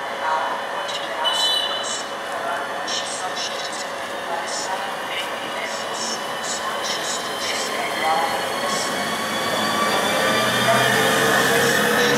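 Škoda-built ČD class 380 electric locomotive pulling away with its train. Its electric traction whine rises in pitch from about two-thirds of the way in as it gathers speed, and a low rumble of the locomotive and coaches builds near the end as it passes close.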